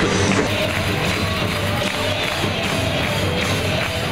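Music playing over the ice rink's sound system, with crowd noise underneath.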